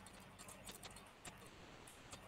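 Near silence: faint room tone with a few scattered faint clicks.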